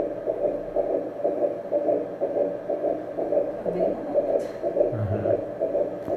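Pulsed-wave Doppler heartbeat sound from a Samsung ultrasound machine during a transvaginal scan of a six-week embryo: a fast, even pulse of about two beats a second. It is a fast embryonic heart rate of about 123 beats per minute, normal for this stage of pregnancy.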